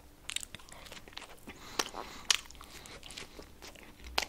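A person chewing a mouthful of burger close to the microphone, quiet with scattered small clicks and crunches; the sharpest come about two seconds in.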